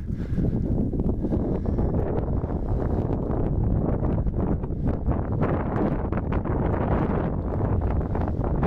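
Wind rushing over the microphone of a camera riding on a moving bicycle, with steady low rumble and many small knocks and rattles from the bike rolling over the path.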